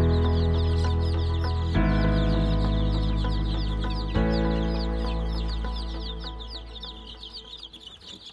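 Dense, continuous peeping of many young chicks. Under it runs a sustained music chord that changes twice and fades away over the last few seconds.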